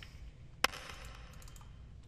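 A single sharp computer mouse click about half a second in, over faint steady room noise from a desk microphone, with a few fainter ticks later.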